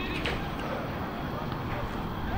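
Steady low wind rumble on the microphone, with a faint distant voice briefly near the start and again near the end.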